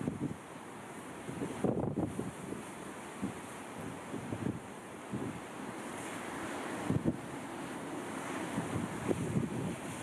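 Wind buffeting the microphone in irregular gusts over the steady wash of rough sea and surf. The gusts are strongest about two seconds in and again around seven seconds.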